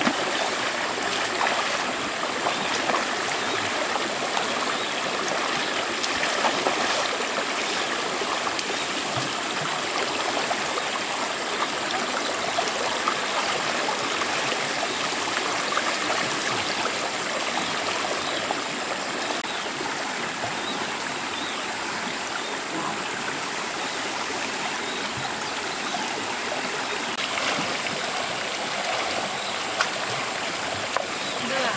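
Shallow stream running over rocks, with occasional splashes as people wade through the water.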